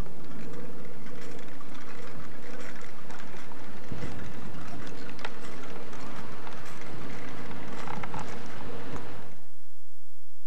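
Child's bicycle with training wheels rolling along asphalt, its wheels giving scattered light clicks and rattles, over a steady low hum that cuts off suddenly near the end.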